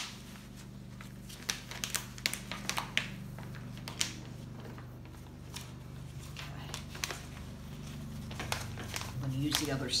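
Plastic sheet and paper towels crinkling as acrylic paint is wiped off the plastic, with a sharp crackle at the start and a run of short crackles a couple of seconds in. A steady low hum runs underneath.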